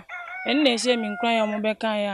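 A rooster crowing in the background while a woman speaks.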